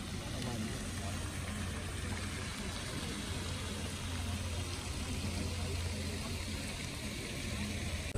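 Steady outdoor park ambience: an even rushing hiss with a constant low hum beneath it and a faint murmur of distant voices.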